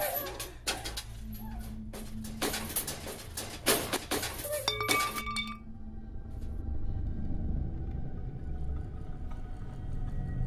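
Metal cage bars and wire clinking and clanking in quick, irregular strikes, with a few short ringing tones. This stops about five seconds in, and a low, ominous film score takes over.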